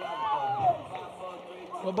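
Speech: a man's voice briefly in the first second, then a commentator starting to speak at the end, over low background noise of the broadcast.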